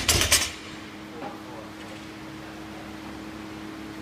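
Loaded barbell with bumper plates bouncing and rattling to rest on a concrete floor after being dropped, dying away within about half a second. Then a steady low hum.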